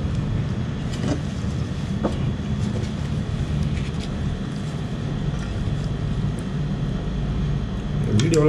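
Steady low rumbling background noise with a few faint clicks.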